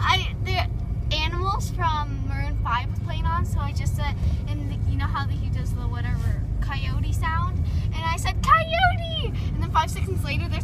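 Steady low rumble of a car driving, heard from inside the cabin, under a girl's voice talking and laughing.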